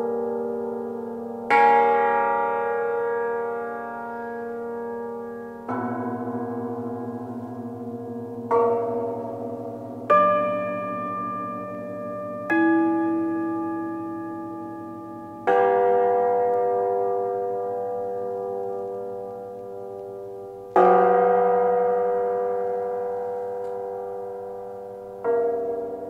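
Cimbalom struck in sparse chords, each left to ring and die away slowly before the next: about eight strikes, spaced two to five seconds apart.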